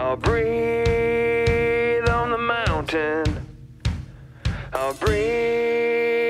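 Heavy rock band recording: a drum kit keeps a steady beat, about two hits a second, under long held notes that slide down in pitch as they end.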